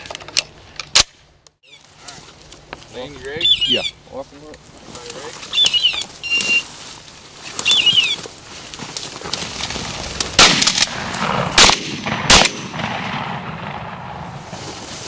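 Three shotgun shots about a second apart near the end, fired at quail flushed over a pointing dog. Earlier there are brief voices and a few short high chirps.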